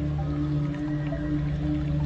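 Slow ambient meditation music of long, steady low held tones, with faint higher notes drifting over them.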